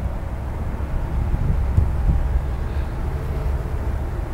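Low, steady outdoor rumble with no clear single source.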